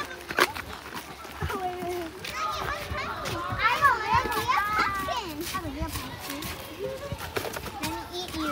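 Children's voices chattering and calling out, high and swooping in pitch, busiest around the middle, with a few knocks of footsteps on a wooden boardwalk.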